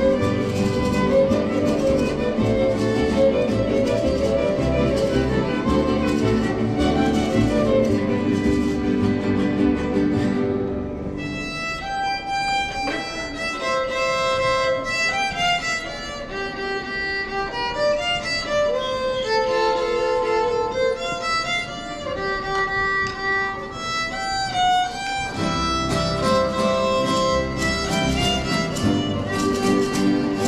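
Mariachi ensemble playing, the violin on the melody over strummed guitars. About eleven seconds in the bass and full strumming drop away for a lighter melodic passage, and the whole ensemble comes back in near the end.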